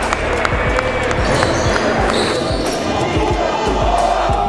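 Basketball gym noise: a basketball bouncing on the hardwood court amid shouting voices and shoe squeaks.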